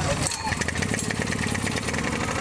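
Ryobi portable generator's single-cylinder gasoline engine being pull-started, catching about half a second in and then running with a steady, fast beat.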